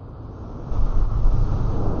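A low rumbling noise with no pitch or rhythm, growing louder a little under a second in.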